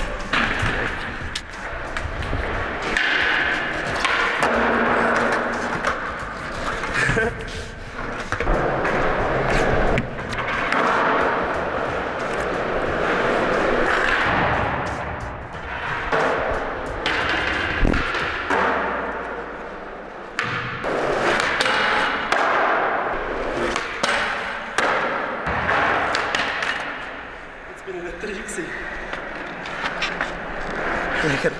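Skateboard wheels rolling on a concrete floor in swelling passes, with repeated sharp knocks of boards popping and landing, echoing in a large bare room.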